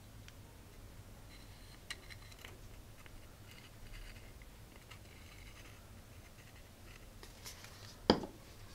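Faint scratching and light ticks of a glue bottle's nozzle run along the seams of a small cube of circuit-board squares, with a few soft handling clicks, over a steady low hum.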